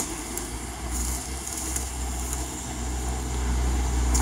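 A vehicle engine idling with a steady low rumble under background noise, with one short click at the very start.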